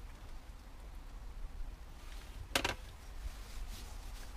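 A brief clatter of kitchenware, two or three quick sharp clicks about two and a half seconds in, over a low steady rumble.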